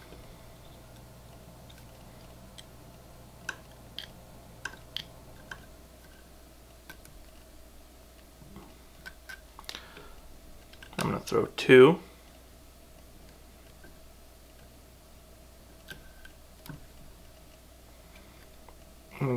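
Faint, scattered small clicks and ticks of thread being whip-finished at a fly-tying vise, over a steady low hum. A short spoken word or two is the loudest thing, about eleven seconds in.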